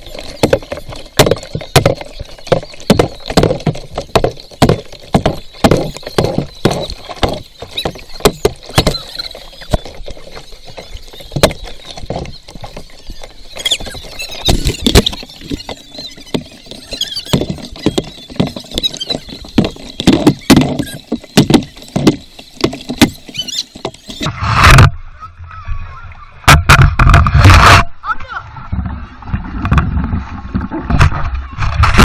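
Water splashing and slapping against a small wooden canoe and a waterproof action camera at the waterline while the boat is paddled, in many quick sharp strokes. About five seconds before the end the sound turns muffled, with heavy low splashes as water washes over the camera.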